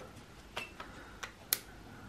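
A few light, sharp clicks, about four spread over two seconds, the one about one and a half seconds in the sharpest, over a faint room background.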